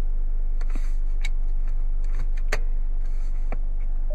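Steady low hum of the Dodge Dart's 2.0-litre Tigershark four-cylinder idling, heard inside the cabin, with a few light clicks.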